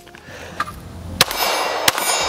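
Two 9mm pistol shots from a Walther Q5 Match, about 0.7 s apart, the first about a second in; a metallic ringing lingers after the first shot.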